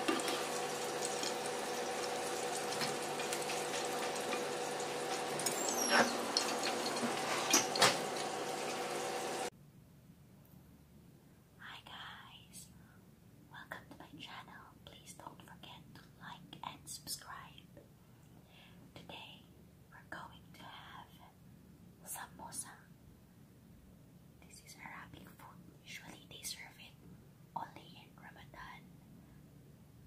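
Chicken samosas frying in a skillet of oil: a steady sizzle with a couple of sharp clicks from a metal spatula against the pan. The sizzle cuts off after about nine and a half seconds, and a woman whispering softly takes over.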